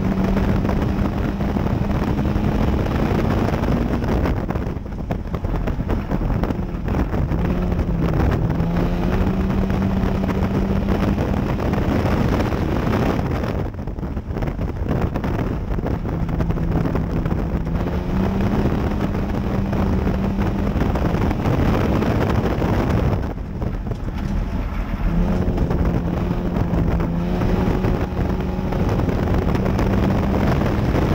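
Front-wheel-drive dirt track race car's engine heard from inside the cockpit under heavy wind and dirt road noise. The engine note climbs as the car pulls down the straights, then drops away as the driver lifts for the turns, about every ten seconds.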